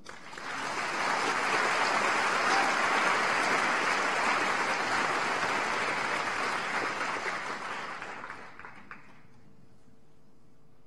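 Theatre audience applauding, building over the first second or two and dying away near the end.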